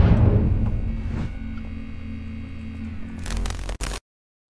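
Electronic logo sting: a deep bass hit with a swish, then low sustained tones that slowly fade away. A few short clicks come near the end before it cuts off suddenly.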